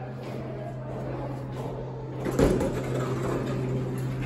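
Elevator doors opening about two seconds in, a sudden clunk followed by the rumble of the panels sliding, over a steady low hum.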